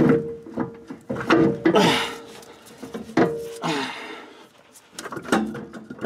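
Irregular metal knocks and scrapes as a Ford 8-inch differential third member, held on a jack, is worked by hand against the axle housing to line it up with the studs.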